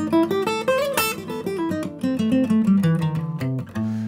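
Vintage Martin acoustic guitar playing a quick single-note pentatonic lead phrase over bass notes, several notes a second, ending on a held low note.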